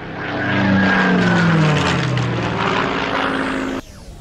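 Supermarine Spitfire's piston engine and propeller in a fly-past: a loud drone whose pitch falls as the plane passes, cut off suddenly near the end.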